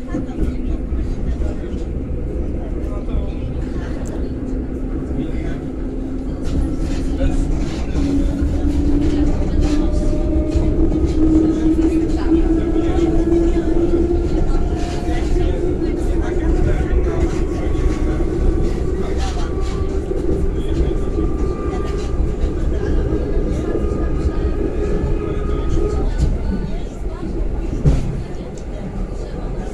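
Inside an EN57 electric multiple unit under way: the traction motors whine, rising in pitch from about a third of the way in as the train gathers speed and then holding steady, over the rumble of the wheels and scattered clicks from the rails.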